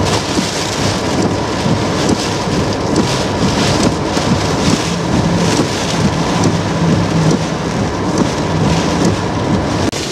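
Hurricane wind and heavy rain beating on a car, heard from inside the cabin: a loud, steady rush of rain and gusts.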